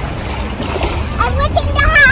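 Children splashing through shallow sea water, with a child's high-pitched shout or squeal starting near the end.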